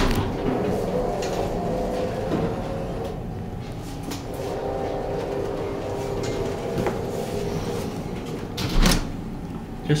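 Steady hum and faint whine inside the cab of a Montgomery hydraulic elevator, with a wavering tone for a few seconds in the middle. A thud at the very start and a sharp knock about a second before the end.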